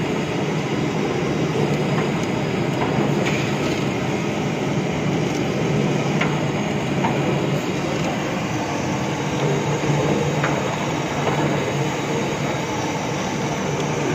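Puffed-rice (muri) roasting machine running: a steady mechanical rumble with grains rattling through its rotating mesh sieve drum.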